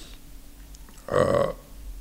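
A man's short guttural vocal sound about a second in, under half a second long, over a low steady hum.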